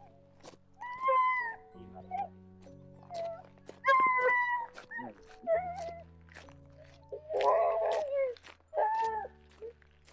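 A dog giving four high, wavering whining cries over background music with held chords and a steady clicking beat.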